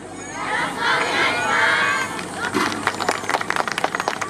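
A group of voices, children's among them, shouting together for about two seconds, then a run of irregular sharp clacks.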